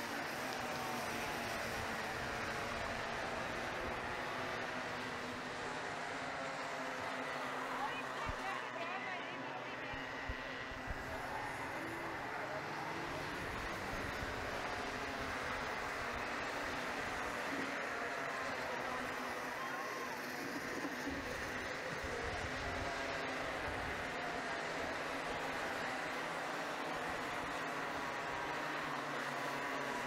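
Small Bambino-class racing kart engines running around the track as a pack, their pitch rising and falling as they accelerate and brake, over a steady wash of background noise.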